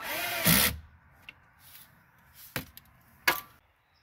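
Cordless power drill driving the T25 Torx screw back into the plastic lower steering-column shroud. It runs with a steady whine, ends in a louder burst about half a second in, and stops before a second. Two short sharp clicks follow later.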